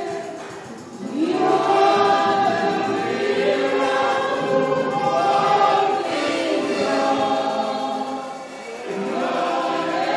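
A choir of many voices singing a gospel song in phrases, with short breaks about a second in and near the end.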